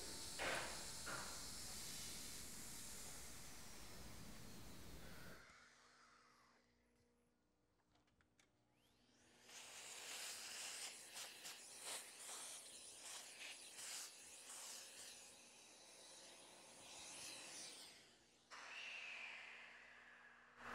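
Faint, irregular scraping and rustling of wood chips being raked out of a freshly routed groove in wood with a small metal hex key. It starts after a low steady hiss and a few seconds of silence.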